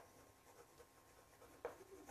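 Faint scratching and tapping of chalk writing on a chalkboard, with a slightly sharper tap near the end.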